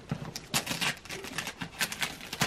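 Wrapping paper on a gift box crinkling and rustling as the box is handled and set down on bedding, a string of irregular dry crackles and clicks.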